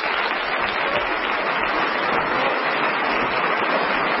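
Studio audience applauding steadily, heard on a 1960s radio broadcast recording with no high end.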